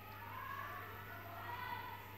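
Faint distant siren, its tone rising and falling twice, over a steady low electrical hum.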